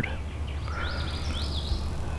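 Small songbirds chirping in the background, a run of short, high, falling notes starting about half a second in, over a steady low outdoor rumble.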